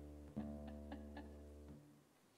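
Acoustic guitar: a chord struck once, ringing quietly with a few light plucked notes over it, then damped by hand near the end.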